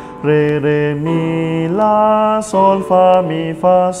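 A man sings a melody in solfège syllables (re, re, mi, la, sol, fa, mi, fa), a cappella, holding one steady note per syllable. The pitch steps up and down from note to note, with short breaks between them.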